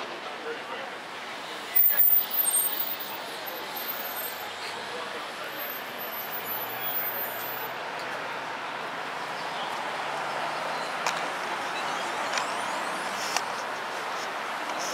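Street traffic noise with a car engine's low hum in the middle and background voices, broken by a sudden loud burst about two seconds in.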